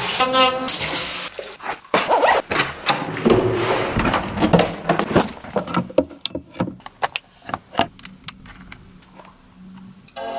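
An electric toothbrush buzzing under a running bathroom tap, then a string of sharp clicks and knocks in the second half, among them a power strip's rocker switch being flipped.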